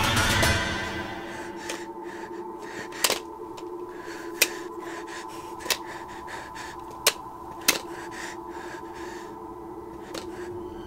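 Horror film score: a loud swell that dies away within the first second into a quiet held drone. Five sharp, short knocks come over it, the first about three seconds in and the last two close together.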